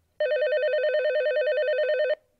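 A telephone ringing: one electronic ring with a fast warble, starting a moment in and lasting about two seconds.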